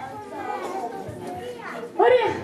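Many young children chattering at once, a low murmur of overlapping voices.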